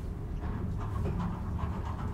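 Traction elevator car running downward with a steady low rumble. From about half a second in there is a run of short rasping noises whose source is unclear.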